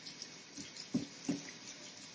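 Wet paint brush tapped against the inside of a stainless steel sink, a few light knocks about a third of a second apart over a faucet running softly. The tapping shakes paint and water out of the bristles after rinsing.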